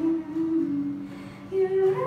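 A female voice singing a slow ballad into a microphone over two strummed acoustic guitars. She holds long notes that step down in pitch, goes softer about a second in, then swells louder on a higher note near the end.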